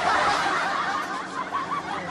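A person snickering with laughter, starting suddenly, over a steady background noise.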